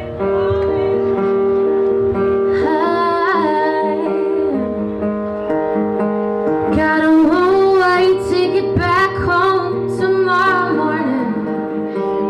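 A woman singing a slow song live over a strummed acoustic guitar. Her voice comes in with long, wavering, sliding phrases a couple of seconds in and again in the second half, while the guitar holds chords underneath.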